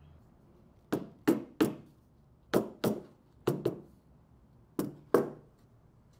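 About nine sharp wooden knocks in small groups of two or three, as plywood workbench parts are knocked together at a joint during glue-up.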